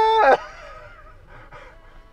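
A high-pitched, drawn-out whining cry held at a steady pitch, which breaks off abruptly a moment in and leaves only faint sounds.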